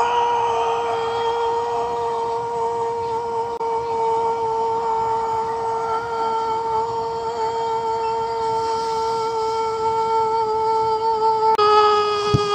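A man's drawn-out scream of "No!", held on one steady high note for the whole stretch, dropping slightly in pitch near the end.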